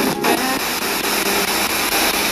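Spirit box sweeping through radio stations: a steady hiss of static with faint broken fragments and a brief dropout just after the start. The captioned reading of it is the words "in bed with you".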